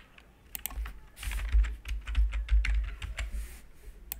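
Typing on a computer keyboard: a quick, uneven run of key taps entering a ticker symbol into a search box, with low thumps under the taps in the middle of the run.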